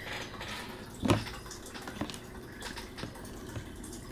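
Quiet room noise with one sharp tap about a second in and a fainter tap about a second later.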